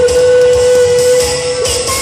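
Live J-pop ballad played loud over a venue PA and heard from the crowd. A female singer holds one long note that ends about a second and a half in, over the band backing.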